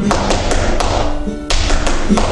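A flamenco dancer's shoes striking a hard floor in sharp footwork taps, about seven in two quick groups with a pause between them, over flamenco music playing for tientos.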